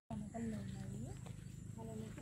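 Faint voices of people talking in the background, their pitch rising and falling in short phrases, over a low steady hum.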